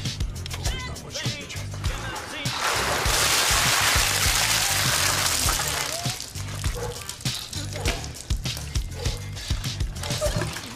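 Music with a steady bass beat throughout. About two and a half seconds in, a loud rush of water pours from a large plastic water-cooler jug over a person, lasting about three seconds.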